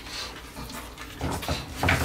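Stifled, breathy laughter in short puffs, louder near the end.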